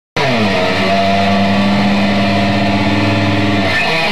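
A distorted electric guitar held on one loud, steady chord that rings for about three and a half seconds. Near the end the band breaks into a moving riff.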